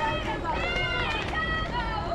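Young players' high-pitched voices calling out in drawn-out, sung tones, typical of team chatter and cheering at a youth softball game, over a low rumble of wind on the microphone.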